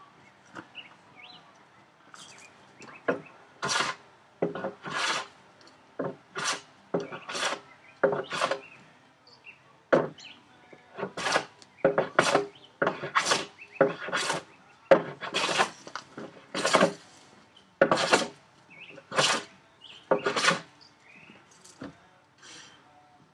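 Hand plane taking short strokes across a softwood 2x board, about twenty in a row starting about three seconds in, coming quicker in the second half. The strokes are taking down a high corner to remove twist and get the board flat.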